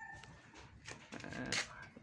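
A dog faintly in the background, a few short calls about a second in.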